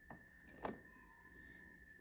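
Near silence, with two faint clicks about half a second apart as a PVC rod-holder mount is tightened onto a kayak's accessory rail.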